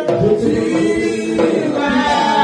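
Worship song sung by voices over microphones, with a hand frame drum beating along underneath.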